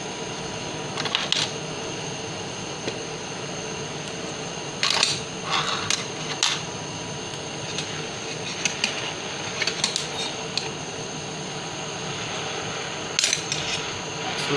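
Butane blowtorch hissing steadily as it melts lead, tin and bismuth together in a quartz crucible. Several sharp clinks of metal against the crucible sound at intervals, about seven in all.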